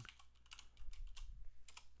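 Typing on a computer keyboard: a quick, fairly quiet run of key clicks.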